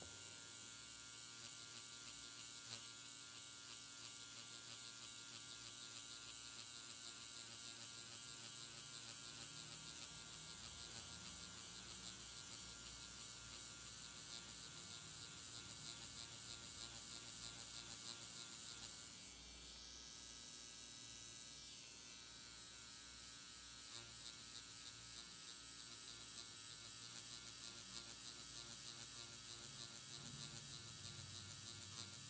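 Quantum One permanent-makeup machine buzzing steadily as its needle cartridge shades latex practice skin, its sound dipping briefly about two-thirds of the way through.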